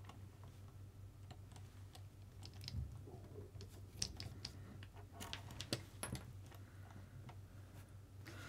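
Sparse faint clicks and ticks of a small hex driver and small metal parts at an RC buggy's front hub as the wheel hex and drive pin are taken out, with a few sharper clicks around the middle, over a low steady hum.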